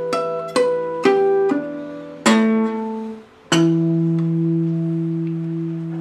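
Baby Taylor three-quarter-size steel-string acoustic guitar played fingerstyle: a run of single plucked notes, a short pause, then a chord struck about three and a half seconds in and left to ring.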